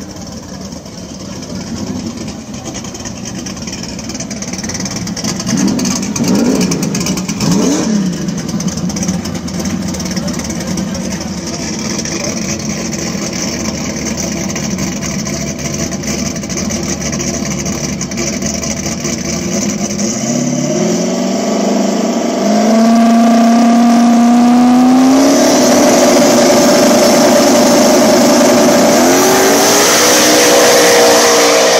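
Two boosted small-block V8 drag cars on the start line: engines running with short revs, then the pitch climbs and holds as they build up on the line, and about 25 seconds in both launch and run at full throttle, louder and steady.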